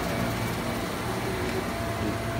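Steady street noise with a low hum of traffic.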